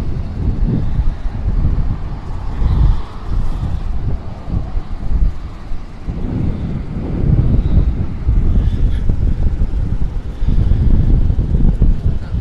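Strong, gusty wind buffeting the microphone in uneven surges, from the squalls of an approaching hurricane rain band, over the rush of heavy surf breaking along a seawall.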